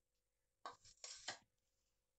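A few short knocks and scrapes, about halfway through, as a bowl of cut radish is set down on the counter; otherwise near silence with a faint steady hum.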